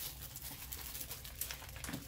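Plastic packaging and plastic file bags crinkling and rustling as they are handled, a quick run of small crackles over a low steady hum.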